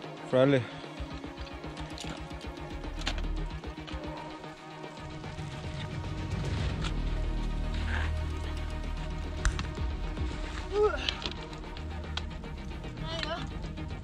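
Background music, with a few short bursts of voice near the start and near the end over a low rumble.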